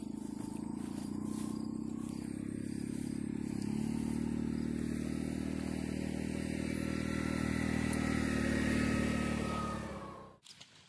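Small utility vehicle's engine running steadily nearby, its pitch stepping up a little about three and a half seconds in and its sound growing louder toward the end.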